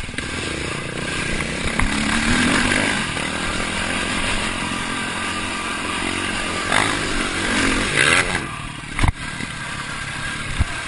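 Dirt bike engine running under load while riding off-road, its revs rising and falling as the throttle is worked, with a haze of wind and riding noise. A sharp knock comes near the end.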